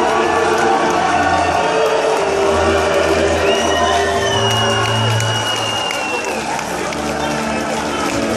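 A concert crowd cheering and whistling over slow, sustained music with low held chords from the hall's PA. One shrill whistle is held for a couple of seconds through the middle.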